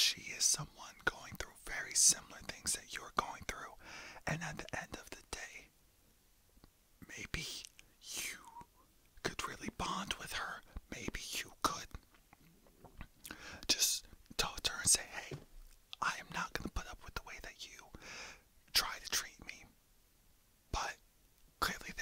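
A man whispering, in phrases broken by short pauses.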